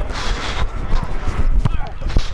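Running footsteps thudding on turf through a body-worn microphone, about three steps a second, over a steady rustling hiss.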